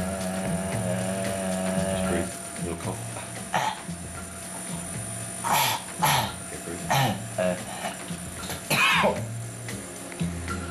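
A man coughing and clearing his throat about five times in short, sharp bursts over background music, his throat numbed for a vocal-cord examination. A held tone sounds for the first two seconds.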